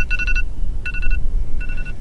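Electronic beeping: a steady high tone sounding in short beeps, about every three-quarters of a second, over a steady low rumble of wind on the microphone.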